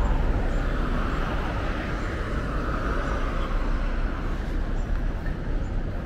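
Street traffic: a vehicle passing on the road, its tyre and engine noise swelling and fading over a few seconds, over a steady low rumble of traffic.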